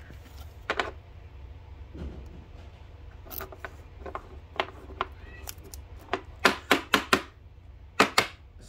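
A trading card and a rigid plastic toploader being handled as the card is slid into it: short scrapes and taps. The loudest of these come in a quick run of about five near the end.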